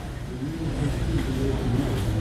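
Large warehouse store background: a steady low rumble with a faint murmur of voices.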